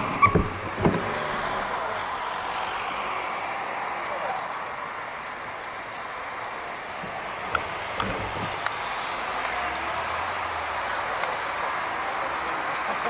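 Passing car traffic on a city street: a steady wash of tyre and engine noise as cars go by. A few sharp knocks come in the first second.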